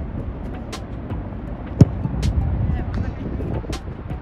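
A football kicked once, a sharp thump a bit under two seconds in, over a steady low rumble.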